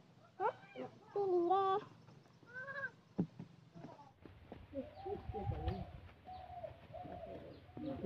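A cat meowing three times in the first three seconds, the middle meow the longest and loudest. After that come quieter, fainter sounds.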